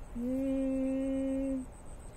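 A man's voice humming one steady held note, unaccompanied, for about a second and a half, stopping cleanly near the end.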